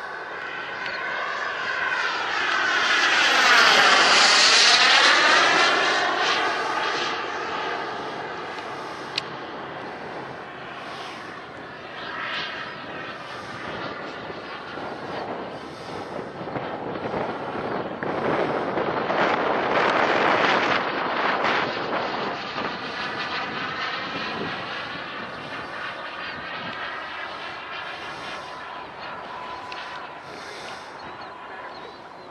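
Turbine engine of a radio-controlled F-16 model jet in flight, a whine and rush that swells as it passes, loudest about four seconds in and again around twenty seconds in. A high whine drops in pitch during the first pass.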